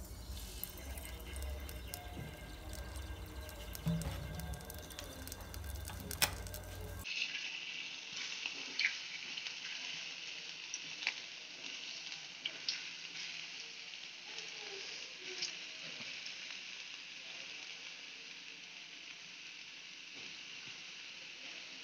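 Potato fries deep-frying in hot mustard oil in a steel pan: a steady sizzle with scattered short pops and crackles, starting abruptly about seven seconds in.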